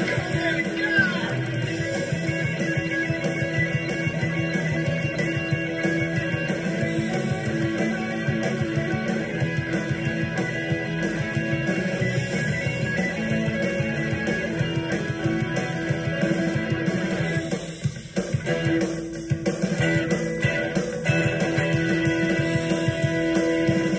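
Rock and roll music with an electric guitar playing over the band; the sound dips briefly about eighteen seconds in, then resumes.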